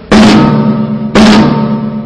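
Snare drum of a Mapex M Birch Series kit struck twice, about a second apart, each hit ringing on with a sustained tone until the next.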